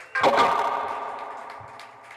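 Electric guitar chord struck once, just after the start, then ringing out and fading over about a second and a half.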